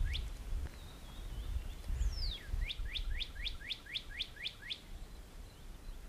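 A songbird singing: one long whistle sliding down in pitch, then a quick run of about ten short down-slurred notes, some five a second. Low wind rumble runs underneath.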